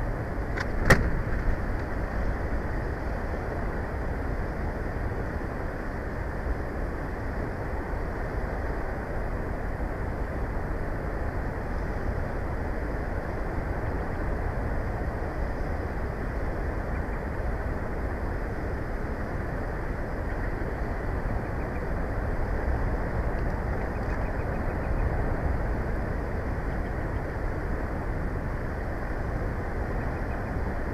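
Steady wind rush and rumble on an outdoor nest-camera microphone, with a sharp click about a second in.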